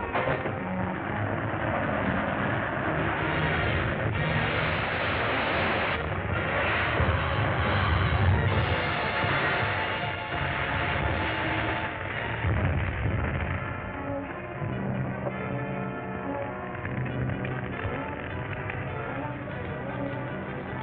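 Dramatic film-score music with an explosion in the middle: a dense crashing, rumbling noise through the middle seconds, heaviest about eight and twelve seconds in. Near the end the music carries on alone.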